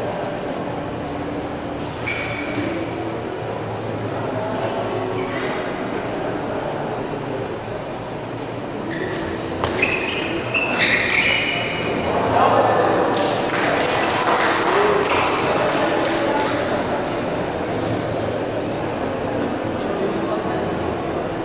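Celluloid table tennis ball pinging off the table and bats: a couple of single bounces early, then a quick rally about ten seconds in. Noise from the spectators follows for a few seconds.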